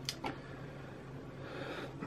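Faint running noise inside a Pacer railbus carriage, a low steady hum from its four-wheel underframe ride, with two quick clicks near the start.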